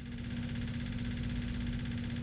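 A motor running steadily, with a constant low hum over a rumbling drone.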